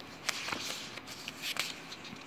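Paper pages in a ring binder rustling as they are handled, with sharp crinkles about a quarter of a second in and again about a second and a half in.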